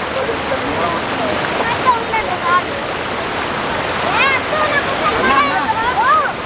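Steady rush of flowing floodwater, with high voices calling out over it, most of them about four seconds in.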